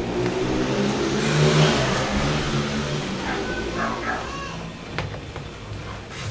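A motor vehicle passes by, its engine swelling to a peak about a second and a half in and then fading away. Faint voices follow, and there is a single click near the end.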